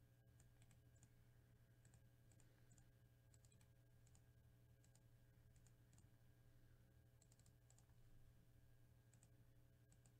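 Near silence: a steady low hum with faint, scattered clicks of a computer mouse or keyboard.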